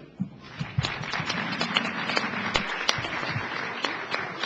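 Audience applauding: a dense, steady patter of many hand claps, beginning just as the speech ends.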